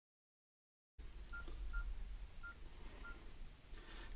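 Four short, faint keypad beeps at one pitch from a mobile phone, spaced unevenly like keys being pressed, over a low room hum. The first second is dead silence.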